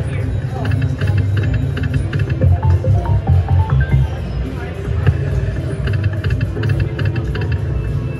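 Ainsworth slot machine playing its free-games bonus music over a pulsing bass, with the clicks and chimes of the reels spinning and stopping and small wins being credited. Casino voices murmur behind it.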